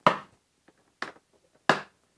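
Milwaukee Packout box's hard plastic lid shutting and its latches snapping closed: three sharp clacks, a loud one at the start, a fainter one about a second in and another loud one near the end.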